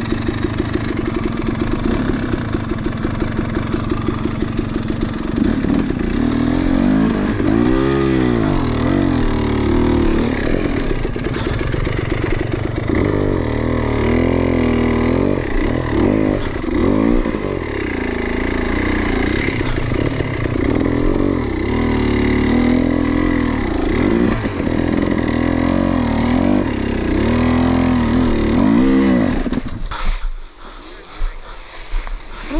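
Enduro dirt bike engine heard close up from onboard, pulsing steadily at low revs for about the first five seconds, then revving up and down again and again as the throttle is worked.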